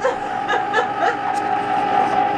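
An electric ice cream maker churning, its motor giving a steady whine, with short bursts of snickering laughter over it.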